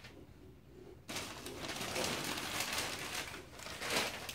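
A small child's soft cooing sounds, then from about a second in, loud crinkly rustling of tissue paper and a paper gift bag being handled.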